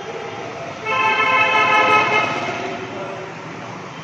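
A horn sounds once, a steady note held for about a second and a half, starting about a second in and loud over the background.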